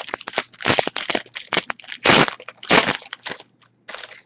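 Foil trading-card pack wrapper being torn open and crinkled by hand: a rapid run of crackling rustles, with two louder bursts a little past halfway.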